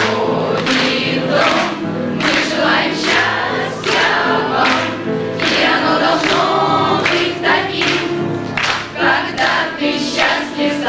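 A choir of schoolgirls singing a song together in unison.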